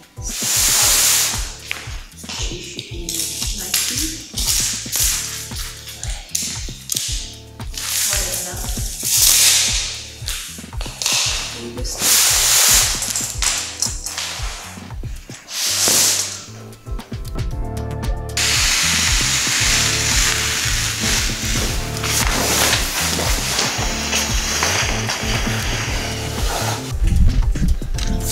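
Background music, with repeated loud rustling swishes of a large sheet of paper-backed wallpaper being unrolled and handled, several times over the first two-thirds.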